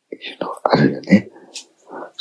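Only speech: a man talking softly, partly whispered.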